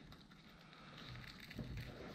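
Faint rustling of a Local Lion backpack's nylon fabric and mesh being handled, growing a little louder toward the end.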